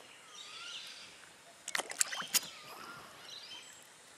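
Birds calling, with a few short whistled calls and faint high chirps, broken about two seconds in by a quick cluster of sharp clicks and knocks.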